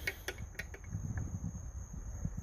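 A few light metallic clicks and scrapes of a screwdriver on the carburettor throttle-linkage screw of a Mercury inline-four outboard, mostly in the first second, over low camera-handling rumble.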